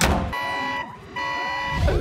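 Cartoon sound effects: a door slams shut, then an electronic alarm buzzer sounds two steady beeps, each about half a second long.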